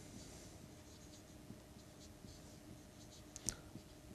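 Marker writing on a whiteboard: faint scratching strokes, with one short, louder stroke about three and a half seconds in.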